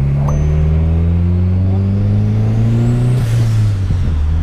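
Turbocharged VW Golf engine, tuned to about 300 hp, heard from inside the cabin accelerating in one gear, its revs climbing steadily for about three seconds. Near the end a short hiss comes as the revs drop back.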